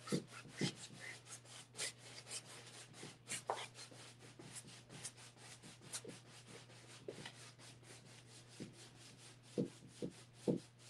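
Paintbrush rubbing paint onto a large stretched canvas in short, irregular strokes, a faint scratchy brushing several times a second, with a steady low hum underneath.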